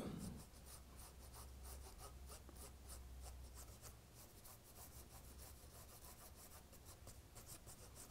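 Faint, quick, scratchy strokes of a stiff paintbrush dry brushing paint across the rails and sleepers of plastic model railway track, over a low steady hum.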